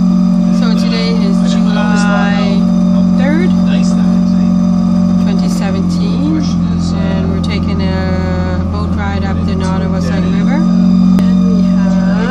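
The houseboat's outboard motor running steadily under way, a constant loud hum that holds one pitch, with a deeper layer joining it from about halfway through to near the end.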